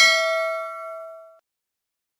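Notification-bell 'ding' sound effect: a single bell-like strike with several ringing tones, fading away within about a second and a half.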